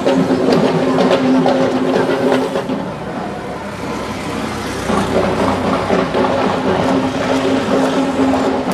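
An auto-rickshaw's small engine running as it passes close by on the road, with steady held tones and scattered sharp strikes underneath.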